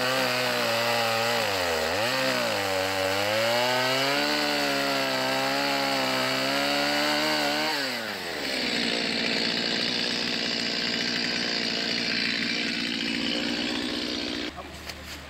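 Small gas chainsaw cutting into a tree trunk, its engine pitch wavering up and down as the chain bites into the wood. About eight seconds in the revs fall away and the saw runs on at low speed.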